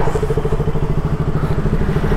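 KTM Duke 200's single-cylinder engine idling with a steady, even beat.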